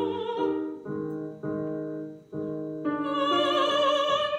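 A woman singing in a classical, operatic style with piano accompaniment. The voice pauses about a second in while three piano chords are struck and fade, then comes back near the end with vibrato.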